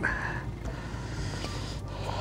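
Steady low rumble of the open-water surroundings of a small boat, with a short scuffle at the start and a single sharp click near the end as a caught walleye is handled.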